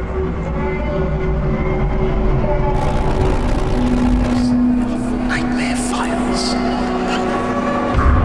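Dark horror intro sound design: a low rumble under sustained droning tones that drop in pitch about halfway through, with a hiss swelling in and short rising screeches near the middle.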